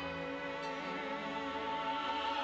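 Instrumental hymn accompaniment between sung lines: held, string-like orchestral chords, steady throughout.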